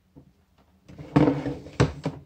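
A plastic clamp multimeter is slid across a table and set down with a hard knock. A small click comes first, then a scraping shuffle about a second in, and the knock near the end.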